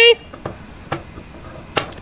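An object sinking through a tall glass of layered liquids, heard as a few faint soft knocks and plops: about half a second in, about a second in and near the end.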